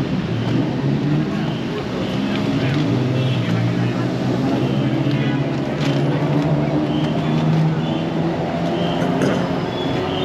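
City street traffic: motor vehicle engines running on the road, with a steady low drone that swells slightly in the second half, under the chatter of passers-by.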